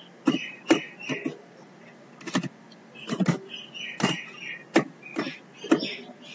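Computer keyboard being typed on: about a dozen irregular keystroke clicks in short runs with pauses between them.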